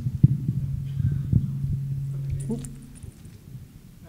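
Microphone handling noise: irregular low thumps and knocks over a steady low electrical hum through the PA, the hum cutting out about three seconds in.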